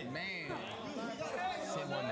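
Background chatter: several voices talking at once, low in level, with no single voice standing out.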